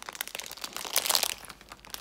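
Plastic cake packet crinkling as it is handled, with a dense run of sharp crackles that is loudest about a second in.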